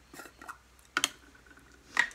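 Sharp clicks from a pot of loose setting powder being handled: two close together about a second in and another near the end.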